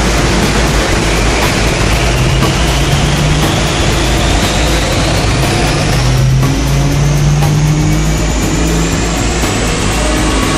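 1970 Ford Mustang Boss 302 small-block V8 running loud under load on a chassis dyno during a pull, with a whine that climbs slowly and steadily in pitch as the revs and roller speed build.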